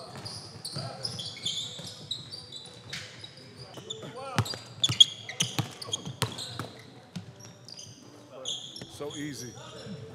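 A basketball being dribbled and bouncing on a hardwood gym floor during play, with sneakers squeaking and players' voices calling out. There is one sharp, loud hit about halfway through.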